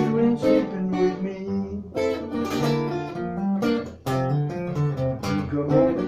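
Acoustic guitar strummed in chords, with a short break in the strumming about four seconds in.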